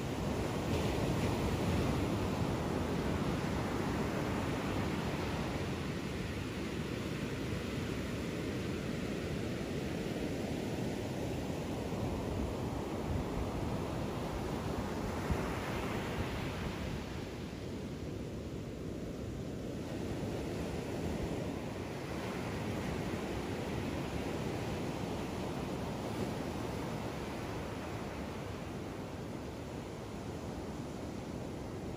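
Ocean surf breaking and washing up a sandy beach, a steady rush that swells twice, near the start and about halfway through.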